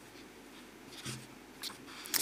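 Soft rustling of paper sheets being handled, a few brief rustles about a second in and again near the end, over faint room tone.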